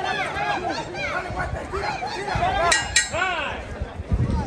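Overlapping ringside voices calling out during a boxing bout, with two sharp clinks close together about three seconds in.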